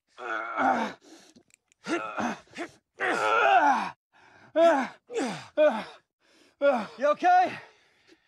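Men grunting, groaning and gasping with strain as one hauls the other up a ladder. It comes as a string of short, hard vocal efforts, many falling in pitch, with quiet gaps between.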